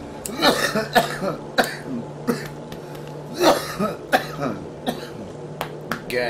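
A person's voice making short, irregular vocal noises rather than words, about eight bursts in six seconds, as the voices of cartoon toy dinosaurs. A steady low hum runs underneath.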